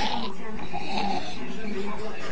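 A pet animal vocalising, mixed with a person's voice.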